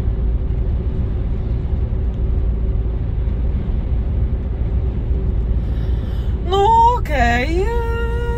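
Steady low rumble of engine and road noise inside a lorry's cab at motorway speed, with a faint steady hum. Near the end a woman's voice comes in, rising and then holding a long drawn-out note.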